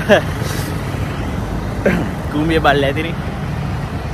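Road traffic passing on a busy multi-lane road: a steady low rumble of engines and tyres, with a man's voice breaking in briefly about two seconds in.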